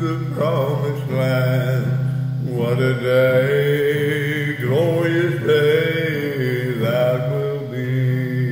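A man singing a slow gospel hymn in long held notes over a soft instrumental backing with a steady low note.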